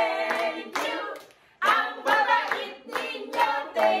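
A small group of people clapping, with excited voices calling out and cheering over it; there is a short lull a little over a second in before the clapping and voices pick up again.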